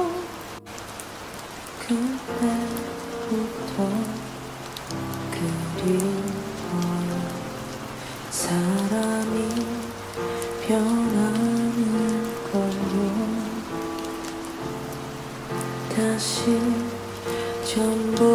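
Steady rain sound layered over a slow, soft ballad with held melodic notes.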